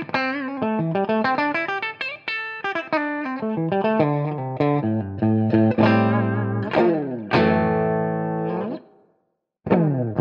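Electric Les Paul-style guitar on its bridge pickup, played through an amp on a clean tone: a riff of quick picked notes that ends on a chord left ringing and fading out. After a brief silence near the end a new riff starts on another guitar.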